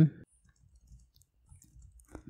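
Faint, scattered clicks of computer keyboard keys as a line of code is typed.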